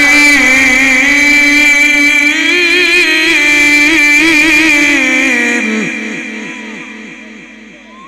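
A male Quran reciter in melodic mujawwad style, amplified through a loudspeaker system, holds one long ornamented note that wavers in pitch. About five and a half seconds in the note ends and dies away in a trail of evenly repeating echoes.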